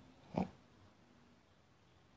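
Near silence, broken once about half a second in by a short, low throat noise from a man, like a brief grunt or throat clear.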